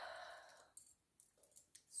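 A woman's soft, breathy sigh that fades out in the first second, followed by a few faint small clicks.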